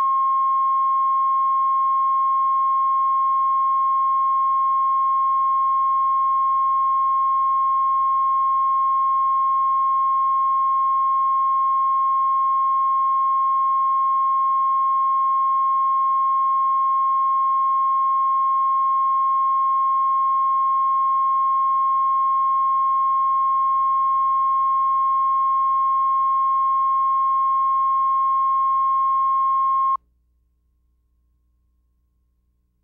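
Steady, high-pitched line-up test tone that accompanies colour bars on a video tape, one unchanging pitch that starts and cuts off abruptly. A faint low hum sits beneath it.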